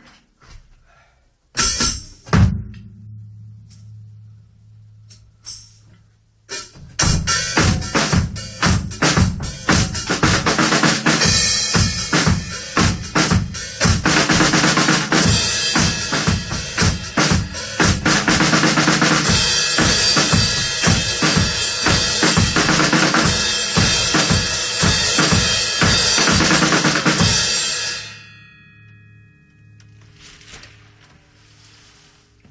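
Acoustic drum kit played loud: a few single hits about two seconds in, then a fast, dense groove from about six and a half seconds that stops near the end, leaving a short ring.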